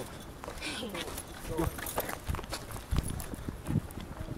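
Footsteps of a few people walking on paving: uneven short knocks, with snatches of low voices.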